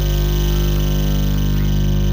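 Samsung Ultra Slim CRT TV's speaker giving a steady low mains hum, with the film soundtrack playing faintly beneath it at turned-down volume.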